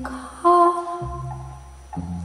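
Live band music: a woman singing softly into a microphone over held low bass notes, with a flute playing along. A louder held note comes in about half a second in.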